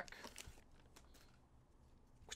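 Near silence, with a few faint soft ticks from Pokémon trading cards being slid through the hands in the first half.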